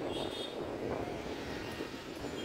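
Police water cannon truck running and spraying its jet: a steady rumble and hiss, with indistinct voices in the background.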